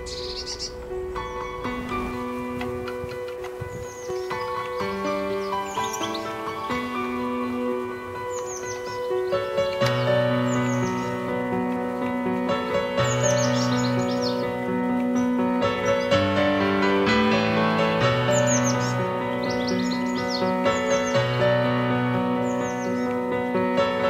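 Instrumental background music of held chords, with a low bass line coming in about ten seconds in. Over it, small birds chirp in short, high, falling notes every second or two.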